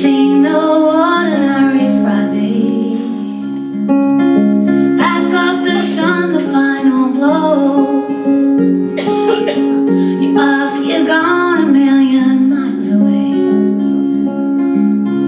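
Live acoustic folk duo: a steel-string acoustic guitar plays a steady repeating pattern, and a woman's voice sings three long phrases over it.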